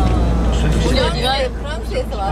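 Steady low drone of the bus's engine and tyres, heard inside the cab while driving on the motorway. The drone drops in level about a second in. Voices talk over it.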